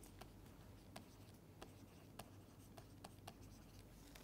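Faint, irregular taps and light scratches of a stylus writing on a tablet screen, about seven short ticks over a low steady hum.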